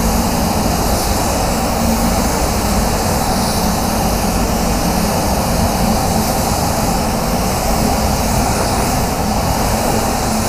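Compressed-air spray gun hissing steadily as it lays down a coat of automotive clear coat, with a steady low hum underneath.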